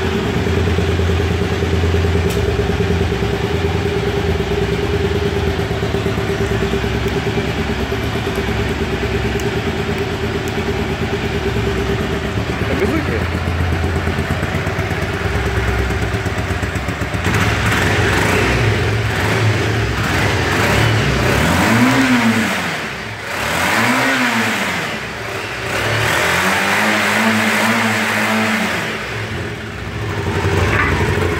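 1990 Yamaha XTZ750 Super Ténéré's parallel-twin engine idling steadily, then revved three times in the last third, each rev rising and falling, the last one held a little longer.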